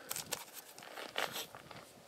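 A hanging plastic bag crinkling and rustling in several short, faint bursts as a hand squeezes it.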